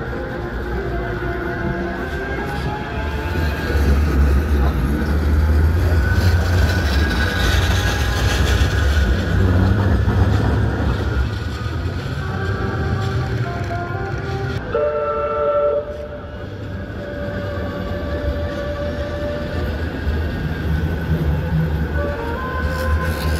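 Bombardier M5000 Metrolink trams running past on street track: a low rumble that swells for several seconds as a tram goes by, with a brief horn-like tone about fifteen seconds in.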